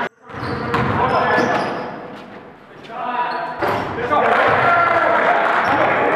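Basketball bouncing on a hardwood gym floor amid players' voices, echoing in a large hall.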